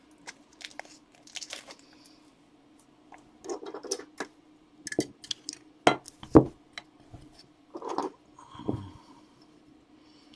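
Clear acrylic card stands and hard plastic card holders being handled and set down on a table: scattered light plastic clicks, taps and rustles, with two sharper knocks about six seconds in.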